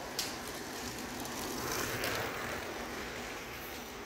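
Outdoor street ambience on a handheld phone while walking, with a click near the start and a swell of noise about two seconds in that fades again.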